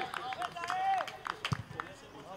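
Men shouting across an outdoor football pitch: two drawn-out calls, one at the start and one about half a second to a second in, with scattered sharp knocks, the loudest about a second and a half in.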